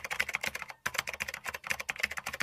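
Computer-keyboard typing sound effect: a fast run of key clicks, with a brief gap a little under a second in.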